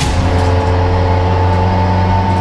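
Audi RS3 LMS TCR race car's turbocharged four-cylinder engine heard from inside the cabin, running at a steady, unchanging engine speed with a low drone.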